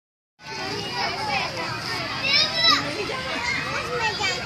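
Children's voices shouting and squealing at play, starting about half a second in, with one loud, high-pitched squeal just past the middle.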